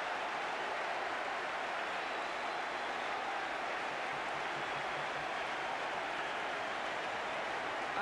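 Large football stadium crowd cheering a home goal, a steady, unbroken wash of noise.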